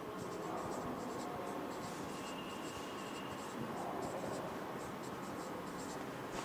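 Marker writing on a whiteboard: the felt tip scratching across the board in a run of short strokes.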